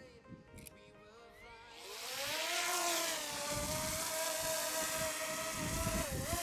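DJI Mini 2 drone's four propeller motors spinning up for an automatic takeoff from a hand. After a quiet start, a whine rises in pitch about two seconds in as the drone lifts off, then settles into a steady hum with a rushing hiss as it hovers and climbs.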